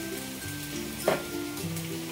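Chopped onion and green chillies sizzling in hot mustard oil in an aluminium kadhai, under steady background music. One brief sharp sound stands out about halfway through.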